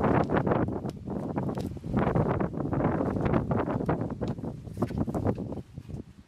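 Close handling noise of transplanting: hands pressing potting soil and moving thin plastic seedling cups, a dense run of rustles and small clicks that dips briefly near the end.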